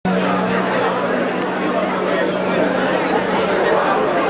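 Crowd chatter: many people talking at once, with no single voice standing out. A steady low hum runs underneath and fades out near the end.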